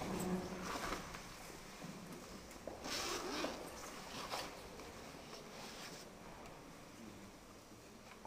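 Scattered knocks and rustles of musicians settling on a stage: a chair, a music stand and sheet music being handled. The noises are busiest about three seconds in and quieter toward the end.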